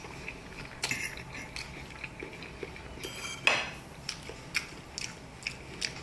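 Metal fork and knife clicking and scraping against a plate while cutting food, in scattered light taps, with a louder swish about halfway through.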